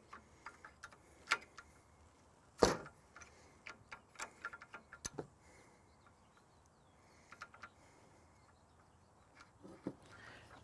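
Metal wrenches clicking and clinking against the hydraulic hose fittings while a loader hose is loosened and disconnected: scattered single clicks, the loudest about three seconds in.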